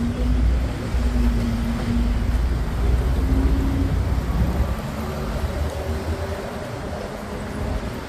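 A motor vehicle's engine rumbling close by as road traffic passes, with a few humming engine tones that shift in pitch. The rumble fades after about five seconds.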